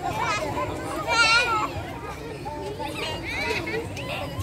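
A group of children shouting and chattering as they play on a trampoline, with one loud, high-pitched squeal about a second in.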